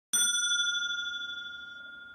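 A bell struck once: a single clear ding right at the start that rings on and slowly fades over about two seconds.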